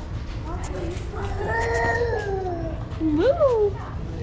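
Goat bleating: one long call that sags slightly in pitch, then a shorter, louder call that swoops up and back down.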